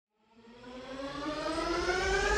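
Synthesized riser sound effect leading into intro music: a pitched tone with overtones that starts about half a second in and slowly climbs in pitch while swelling louder.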